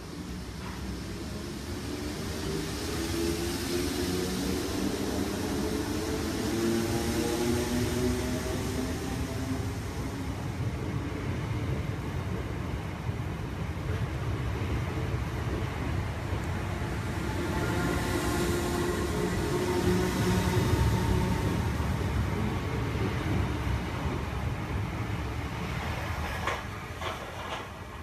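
Southern Class 455 electric multiple unit pulling away and passing close by, with a steady rumble of wheels on rail. The traction motor whine rises in pitch twice as the train accelerates. A few sharp clicks near the end as it recedes.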